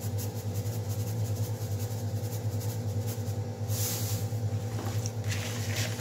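A steady low machine hum with a few overtones, with brief soft rustles as salt is shaken into a hand and buckwheat-and-cheese filling is worked by hand in a plastic bowl.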